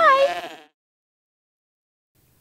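A person's voice bleating like a sheep, fading out within the first second.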